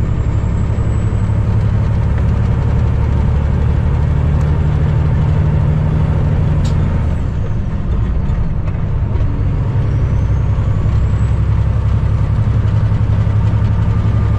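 Cummins ISX diesel engine of a 2008 Kenworth W900L running at highway speed, heard as a steady low drone inside the cab along with road noise. About halfway through the drone eases for a moment, a faint high whine dips and comes back, and there is one sharp click before it picks up again.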